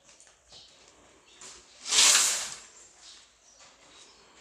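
A single brief hissing swish about two seconds in, lasting about half a second, over faint workshop background.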